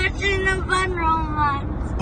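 A high voice singing held, wordless notes that slide slowly downward, over the steady low road rumble of a car's cabin on the move.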